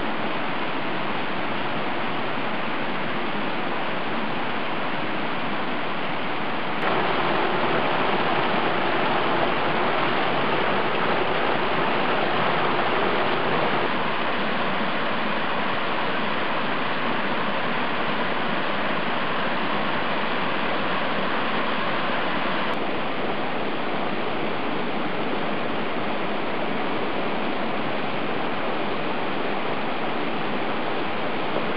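Small woodland waterfall and creek running over rocks: a steady rush of water. It steps up abruptly to a louder patch about a quarter of the way in, then drops back in two steps later on, where the shots change.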